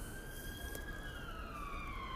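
A distant emergency-vehicle siren wailing faintly: one slow tone that holds level, then falls in pitch through the second half.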